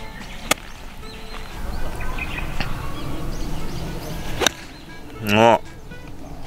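A 60-degree wedge striking a golf ball off fairway turf about half a second in: one sharp click. A second sharp click comes about four and a half seconds in, then a brief loud pitched cry.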